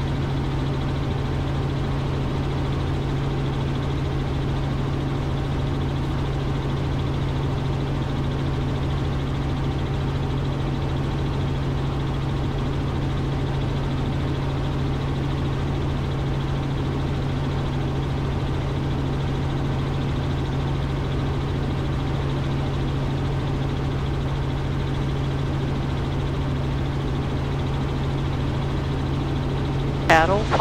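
Robinson R44 helicopter in cruise flight, heard from inside the cabin: a steady drone of engine and rotors, with a constant low hum under an even rushing noise.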